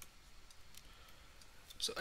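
Faint, sparse clicks from writing with a digital pen tool on a computer. A man's voice starts near the end.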